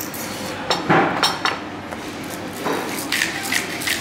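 Tabletop spice grinder being twisted by hand over a plate, giving short dry grinding crackles: a few about a second in, then a quicker run of them near the end.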